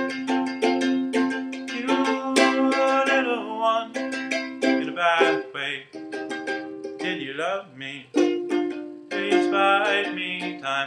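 Ukulele played in a steady stream of plucked and strummed chords, with a man's voice singing long, sliding notes over it.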